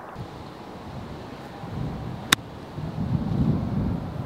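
Wind buffeting the microphone as a low, uneven rumble that swells in the second half, with one sharp click a little past halfway.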